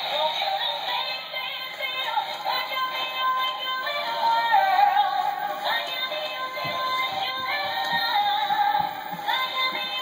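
Animated dancing plush sock monkey toy playing its song through its small built-in speaker: a thin, tinny tune with a synthetic singing voice, starting suddenly as the toy starts dancing.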